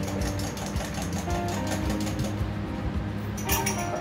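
A bar spoon stirring ice in a highball glass: quick, rapid clinking of ice and spoon against the glass that dies away after about two seconds. Background music with sustained tones plays throughout.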